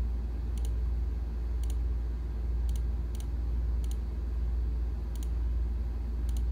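Six sharp computer mouse button clicks at irregular spacing, each a quick press and release, as a password is entered on an on-screen keyboard. A steady low electrical hum runs underneath.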